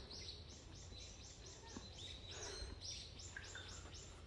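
A songbird calling a fast run of short, high, downward-sliding notes, about four a second, over a steady low rumble.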